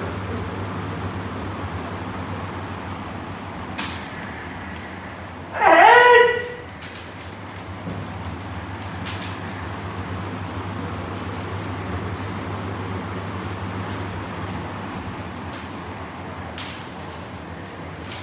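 A kendoka's kiai: one loud shout about six seconds in that rises in pitch and is then held for under a second, over a steady low hum. A few short sharp knocks come singly, near four, nine and seventeen seconds.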